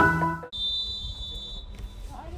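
The end of a short electronic logo jingle, cut off abruptly about half a second in. Then quieter outdoor ambience follows, with a steady high-pitched tone that stops shortly before the end.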